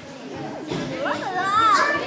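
High-pitched children's voices calling out, with several exclamations that slide up and down in pitch, starting about half a second in after a brief lull.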